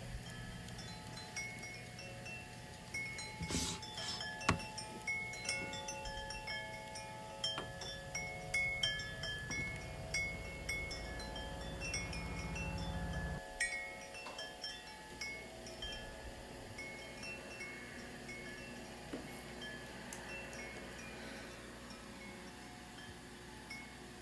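Chimes tinkling in an irregular scatter of ringing notes at many pitches, over a low drone that stops about halfway through.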